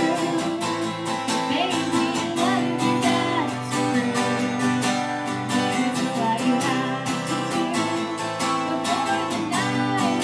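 Acoustic guitar strummed steadily while a woman sings the melody over it, a live duo performing a song.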